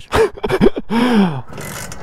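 A person laughing in short breathy gasps, followed near the end by a rough, scratchy noise.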